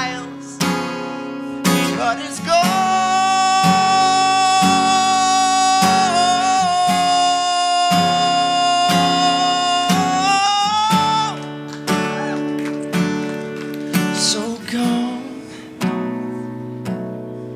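A man singing to his own strummed acoustic guitar, holding one long note for about eight seconds before the guitar carries on alone.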